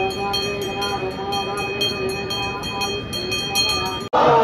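A bell rung rapidly and evenly, about four strokes a second, its ringing sustained between strokes, over a steady chanting voice.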